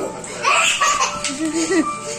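A young child's high-pitched laughter, starting about half a second in, over background music.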